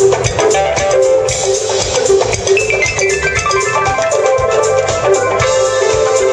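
Live funk band playing: electric guitar, bass, drum kit and percussion struck with sticks, with keyboard. A run of notes steps down in pitch from high to middle about halfway through.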